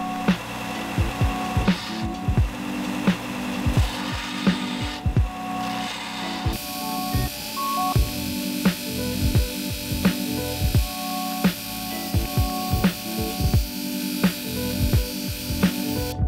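Background music with a steady beat throughout. Under it, for the first six seconds or so, a 4 x 36 inch belt sander grinds the metal tip of a copper-tube pen body into a cone; then the grinding stops.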